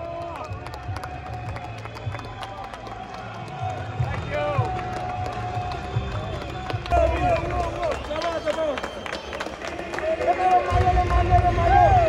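Celebrating players and supporters shouting and chanting, with hand-clapping and music underneath; the voices and a low beat grow louder in the last second or so.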